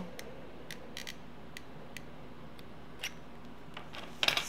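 A few faint, irregular clicks and ticks from a hot glue gun as glue is laid along a binder's spine, over quiet room tone.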